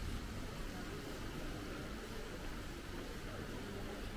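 Steady outdoor street ambience: an even rush of background noise with a low rumble underneath and no distinct voices or events.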